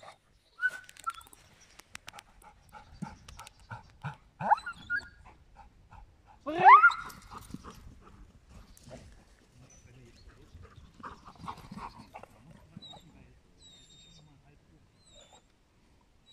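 Giant schnauzer giving a series of short pitched calls, the loudest a rising call about seven seconds in.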